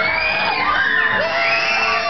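A crowd of people screaming and whooping together, many high voices overlapping without a break.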